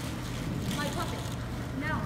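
Hall ambience with a steady low hum and a few short, high children's voices calling out briefly in the middle and near the end.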